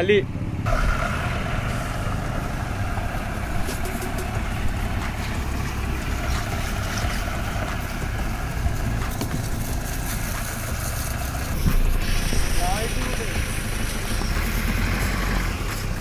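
Vehicle on the move: a steady engine sound with road and wind noise.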